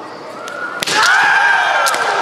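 Bamboo shinai strike, a sharp crack about a second in, within loud kiai shouts from the kendo fencers that rise just before the hit and carry on after it. A second, lighter click comes near the end.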